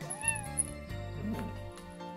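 A domestic cat meows once, a short call that rises then falls.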